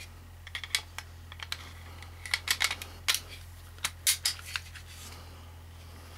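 Glock 26 pistol being reassembled by hand: a series of sharp metal and polymer clicks and light scrapes in irregular clusters as the slide and parts are fitted back onto the frame, dying away after about four and a half seconds.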